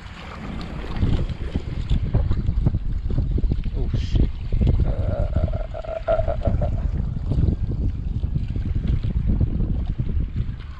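Strong wind buffeting the microphone in gusts, with a brief steady tone lasting about two seconds midway through.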